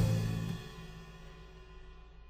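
The end of a live band recording played back: the last notes and a cymbal hit ringing and dying away under a fade-out, leaving faint background noise.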